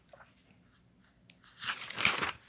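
Paper page of a spiral notebook being turned: faint ticks, then a loud crinkling rustle of paper starting near the end.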